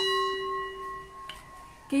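A bright metallic bell chime, struck right at the start, rings on in a steady clear tone and fades away over about a second and a half.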